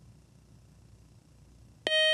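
Faint room tone, then near the end a quiz-show buzz-in tone starts: a loud, steady electronic tone with many overtones, signalling that a contestant has buzzed in to answer.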